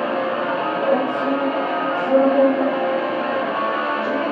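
Live doom/post-hardcore metal played on electric guitar through a PA, with long held notes.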